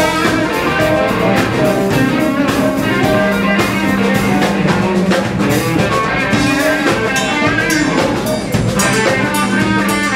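Live blues band playing, with a Telecaster-style electric guitar over a drum kit and cymbals. The drums hit steadily throughout, and a low note is held at several points.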